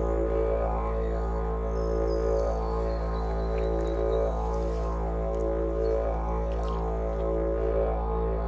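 Didgeridoo playing a continuous drone, its tone rising and falling in a repeating rhythmic pattern.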